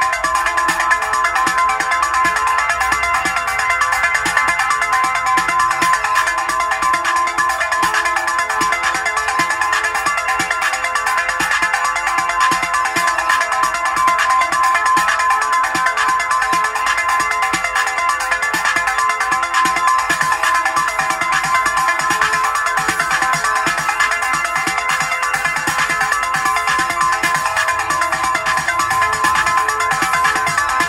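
Home-recorded electronic track made on Roland drum machines (TR-808, TR-707) and a Juno-60 synthesizer: a steady, fast, bright repeating pattern with little bass, running without a break.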